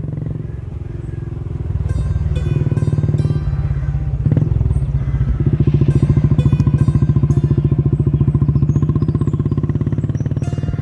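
Royal Enfield single-cylinder motorcycle engine idling with a steady, rapid beat, growing louder over the first few seconds.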